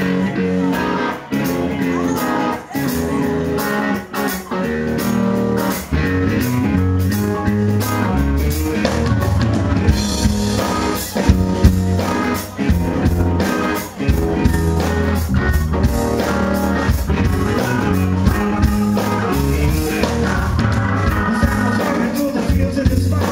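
A live electric blues band plays a melodic hook led by electric guitar over bass guitar, drum kit and keyboards. The bass and drums fill in fuller about six seconds in.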